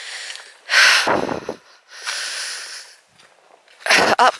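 A hiker's heavy breathing close to the microphone while walking uphill: about three breaths, the loudest about a second in.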